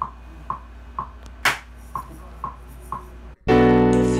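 Finger snaps counting in at about two a second, then, after a brief dropout near the end, a keyboard in a piano voice comes in with a held jazz chord.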